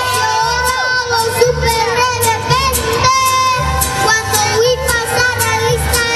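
A young boy singing a mariachi song into a microphone over amplified musical accompaniment with a steady, regular bass pulse; his held notes carry a vibrato.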